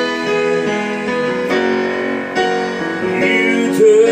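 Digital piano playing slow, sustained chords in a country ballad, with a voice briefly coming in near the end.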